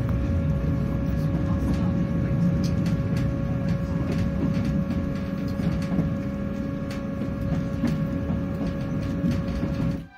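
Inside a moving Class 158 diesel multiple unit: a steady low rumble with a constant whine running over it, and scattered light clicks.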